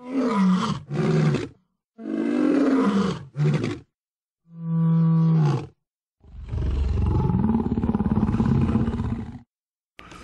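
A string of short growling roars, then a brief steady held tone about halfway through, then one long roar of about three seconds, voiced for a lion character.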